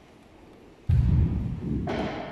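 A person thrown onto the floor lands with a heavy thud about a second in, followed by a sharper slap near the end as the fall continues.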